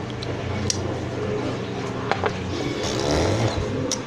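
A glass jar handled close to the microphone, with a few light clicks, over a steady low hum.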